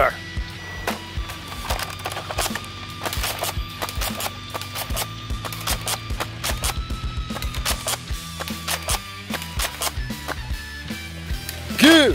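Irregular run of sharp clicks and knocks from a Nerf Double Dealer toy blaster being worked and fired at plastic targets, densest in the middle, over steady background music.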